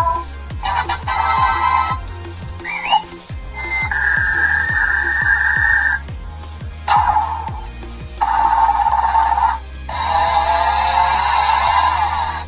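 A run of short electronic sound effects from the Clementoni Cyber Robot's built-in sound library, played one after another. It includes synthetic tones, a quick rising chirp and a ringtone-like clip, each lasting one to two seconds with brief gaps between them. A steady low humming pulse runs underneath.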